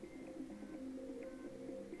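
Faint, steady low hum made of a few unchanging tones, with a couple of brief faint high tones.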